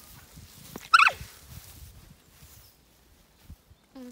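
An alpaca hums once, about a second in: a short, high, wavering call that slides down in pitch.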